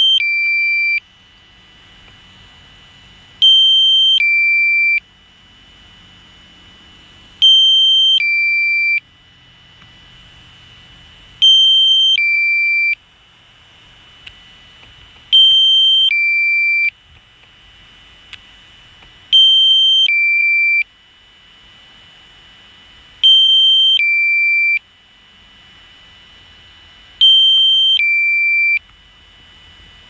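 Drone flight app's warning alert: a loud two-tone beep, high then lower, about a second and a half long, repeating every four seconds, with a faint steady tone between the beeps.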